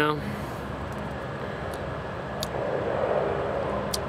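Steady outdoor background rumble, like distant traffic, growing somewhat louder in the last second and a half, with a couple of faint clicks.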